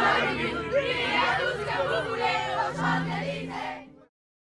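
A crowd of voices cheering and chanting together, fading out just before the end.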